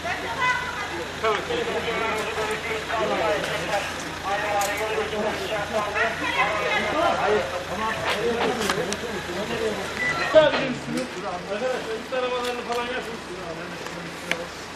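Several men's voices talking over one another, indistinct, with a few short knocks or clicks and one sharp, loud sound a little past ten seconds in.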